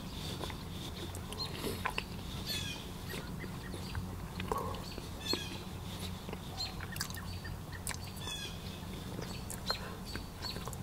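Birds chirping outside, with short scattered calls throughout, over soft chewing clicks from someone eating pizza close to the microphone. A low steady hum runs underneath.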